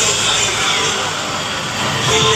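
Music played loud through a large outdoor DJ sound system, with steady heavy bass.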